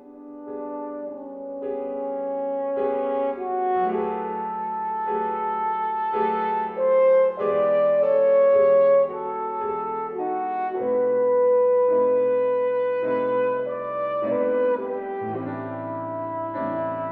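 French horn playing a slow melody of long held notes over a grand piano accompaniment, swelling loudest about halfway through.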